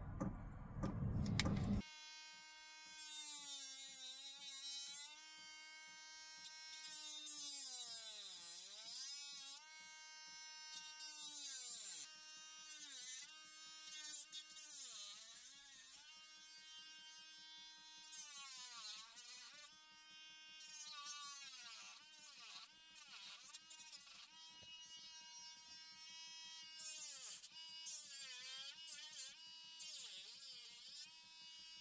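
Handheld rotary tool with a small cut-off disc whining at high speed while trimming plastic tabs. Its whine repeatedly sags and climbs back as the disc is pressed into the plastic and eased off. A loud rough noise fills the first two seconds before the whine settles.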